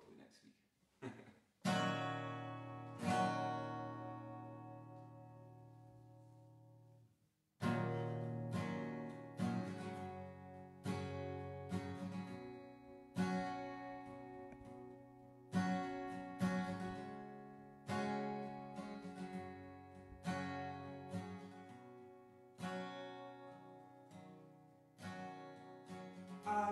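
Acoustic guitar strummed: two chords left ringing and fading for several seconds, then a brief pause and a steady pattern of strummed chords, one about every second or so, as the song's introduction.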